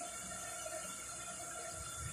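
Steady faint hiss of background noise, with no distinct sound standing out.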